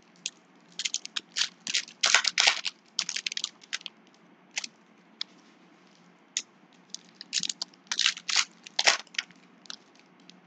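Foil wrapper of a Topps Finest trading-card pack crinkling in bursts of sharp crackles as it is torn open and the cards are pulled out. The crinkling is loudest about two seconds in and again near nine seconds.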